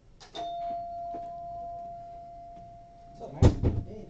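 A chime rings once: a single steady bell-like tone that holds for about three seconds. Near the end there is a loud knock.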